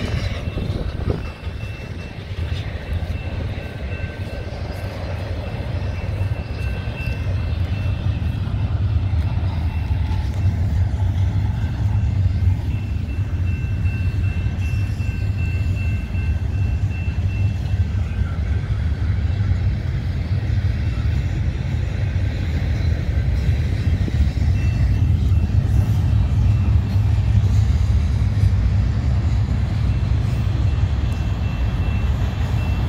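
A loaded double-stack intermodal container train rolling past close by: a steady low rumble of the well cars on the rails, growing a little louder in the second half, with a thin high whine coming and going in the first half.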